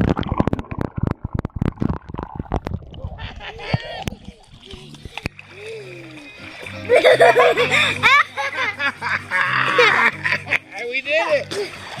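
Bubbling, churning pool water heard with the camera underwater for the first three seconds or so, as a man and a toddler are dunked. After that the water dies down, and voices and background music take over from about seven seconds in.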